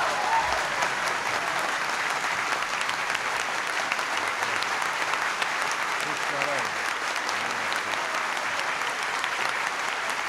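A large audience applauding steadily, with a few faint voices under the clapping.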